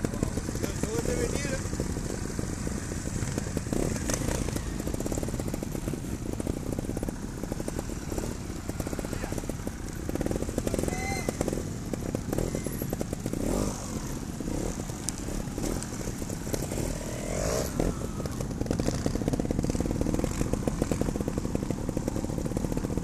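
Trials motorcycle engines running and blipping at low revs as the riders move off together, picked up by a camera mounted on one of the bikes.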